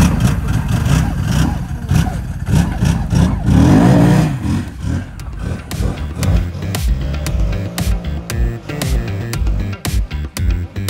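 OSM SM1000 snowmobile engine running and revving up about three to four seconds in, then background music with a steady beat takes over from about five seconds.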